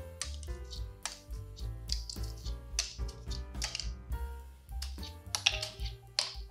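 Quiet background music with a series of light, irregular clicks as small fluted candy cups are flicked one by one off a nested stack with one hand.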